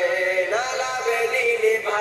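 A man singing a slow Bengali song, holding long notes that slide up and down in pitch between syllables.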